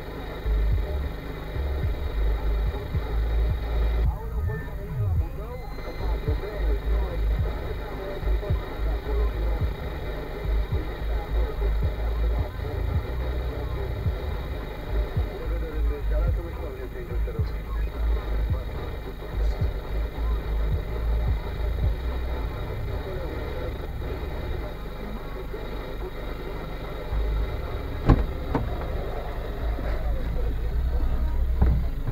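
A car idling while stopped, heard from inside the cabin, with radio speech and music playing quietly over it.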